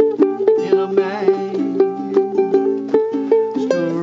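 Two ukuleles playing together, a 1950s Kamaka and a five-string Boat Paddle uke. Picked melody notes ride over chords, with a steady pulse of strums.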